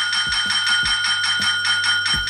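A brass desk bell (service call bell) struck over and over in quick succession, about four dings a second, its ringing tone carrying on between strikes.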